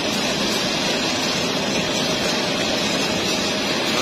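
Poultry slaughter-line machinery running: a loud, steady mechanical noise that does not change.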